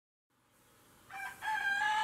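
A rooster crowing: a short first note about a second in, then a long held note.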